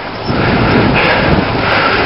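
Wind rushing over the microphone of a camera carried on a moving bicycle, a loud, steady rush mixed with the bike's road noise.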